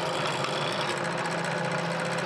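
Bench drill press motor running steadily as its twist bit drills a hole through a plastic enclosure, an even hum with a hiss over it.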